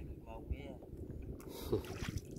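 Wind on the microphone and water lapping against a small wooden boat's hull, with a short splash about one and a half seconds in as a gill net is worked at the waterline.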